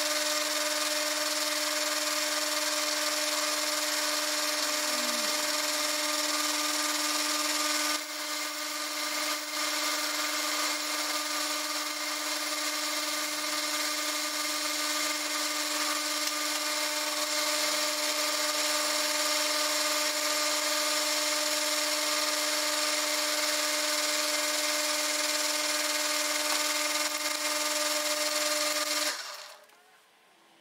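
Small bench metal lathe running, its motor and spindle giving a steady hum with a bright hiss over it. The lathe is switched off about a second before the end, and the sound dies away quickly.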